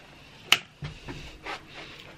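Handling noise from a handheld camera being carried: one sharp click about a quarter of the way in, then a few softer knocks and rustles.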